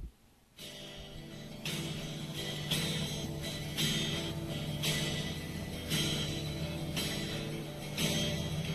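Guitar strummed on its open strings, without fretting, in a slow steady pattern of about one strum a second, after a short click right at the start.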